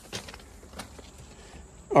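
Faint steady low hum from outdoor air-conditioning condenser equipment, with a few light clicks, the clearest just after the start.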